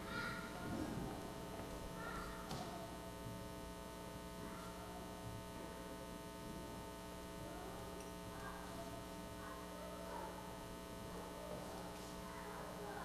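Steady electrical mains hum, with faint, indistinct murmured voices now and then.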